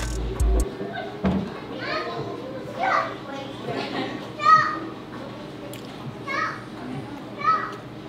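Children's voices: about five short, high-pitched calls and shouts over a steady murmur of background chatter, the loudest about four and a half seconds in.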